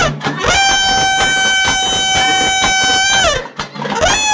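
A wind instrument holds one steady high note for nearly three seconds, sliding up into it and bending down at the end. Near the end it sounds the same note again.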